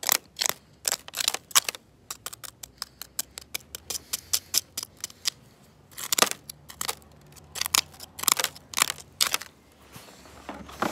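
Plastic utensils stabbing and scraping at dirt: a run of short, sharp scrapes and clicks. The strokes come a few times a second, quicker and lighter in the middle and heavier again near the end.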